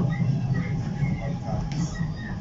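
Cabin of a Docklands Light Railway B07 Stock train in motion: a steady low rumble of the running train, with faint, indistinct voices over it.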